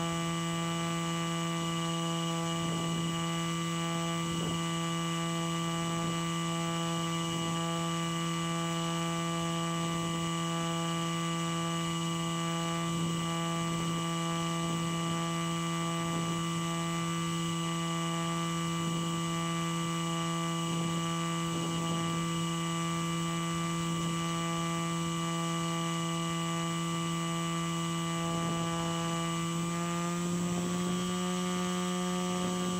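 A small motor running at a steady speed, a constant pitched drone that steps up slightly in pitch right at the end.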